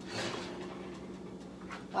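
A baked sponge cake in its pan being lifted off an oven rack with oven mitts: soft rustling and handling noises over a steady low hum.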